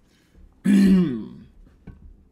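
A man clears his throat once, about half a second in: a rasping start that trails into a short falling voiced sound. A faint click follows near the end.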